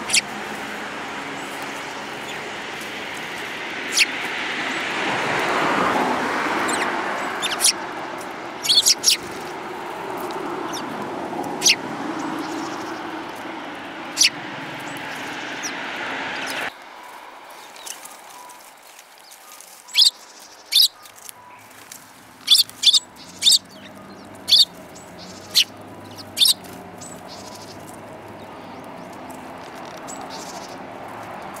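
Eurasian tree sparrows giving short, sharp chirps, singly and in quick clusters, more of them in the second half. Under the first half a rushing background noise swells, peaks about six seconds in, and cuts off abruptly a little past the middle.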